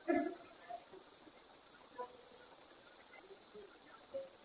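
A steady high-pitched tone that runs unbroken over faint room noise.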